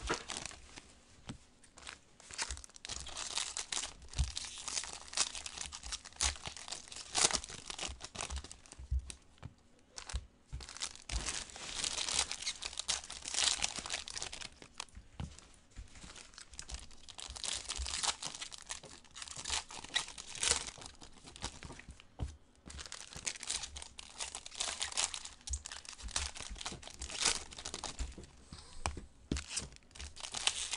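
Foil trading-card pack wrappers being torn open and crumpled by hand, a run of irregular crinkling and tearing that goes on throughout with brief lulls.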